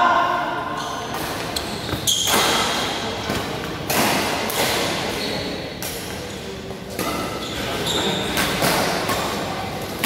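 Badminton rally: rackets hitting a shuttlecock in sharp, irregular strikes a second or two apart, over the background noise of a busy hall.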